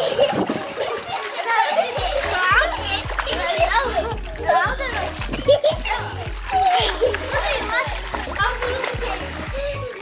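Children shouting and calling out while splashing in sea water, over background music whose steady low beat comes in about two seconds in.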